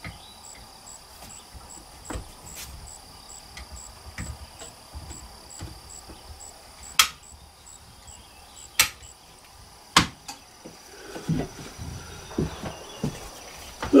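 A few sharp clicks and knocks from handling a flintlock rifle at a wooden bench, the loudest about 7, 9 and 10 seconds in, with softer knocks and thumps near the end. Behind them an insect chirps faintly and evenly, about two or three times a second.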